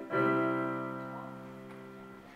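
A chord struck on a Casio digital piano and left to ring, fading away slowly over the two seconds.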